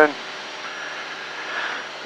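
Steady cabin drone of a Cessna 172's engine and propeller in level cruise, power set at about 2350 rpm. A faint high tone hangs over it for about a second in the middle.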